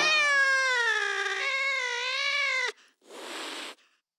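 A long, drawn-out meow-like call, its pitch falling and then wavering, cutting off sharply about two and a half seconds in. A short burst of hiss follows about three seconds in.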